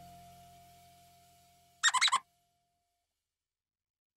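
The last chord of the background music dies away, then about two seconds in a brief comic animal-call sound effect: a quick run of about five calls, over in under half a second.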